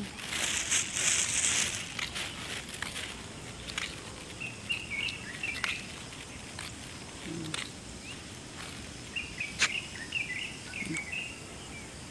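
Small birds chirping in short clusters over outdoor background noise, with a burst of hissing noise in the first two seconds and scattered clicks, the sharpest and loudest near ten seconds in.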